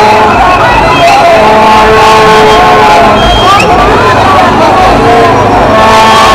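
Loud crowd of protesters shouting and calling out, many voices at once with no single speaker standing out, and long steady tones held through the noise.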